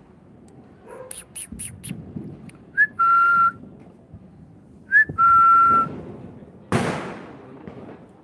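Two short whistles about two seconds apart, each a quick upward flick into a steady held note. Near the end comes a single sharp bang that dies away quickly.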